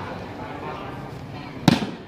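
A volleyball struck hard by a player's hand: one sharp smack near the end, ringing briefly in the shed, over a low murmur from the spectators.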